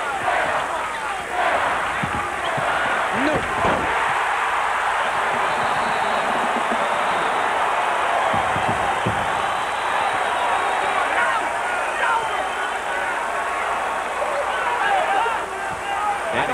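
Arena crowd noise during live basketball play: a steady din of many voices, with a few knocks from the court, around three to four seconds in and again near nine seconds.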